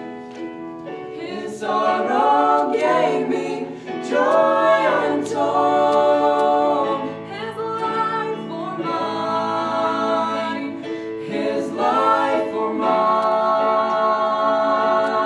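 Mixed vocal trio, two women and a man, singing a gospel song in harmony with long held notes, after a brief lull at the start.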